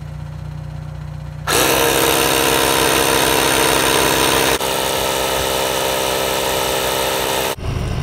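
Slime portable 12-volt tire inflator switching on about a second and a half in and running loud and steady, its compressor pumping air into a completely flat tire. It cuts off abruptly near the end. A low steady hum sits beneath it before it starts.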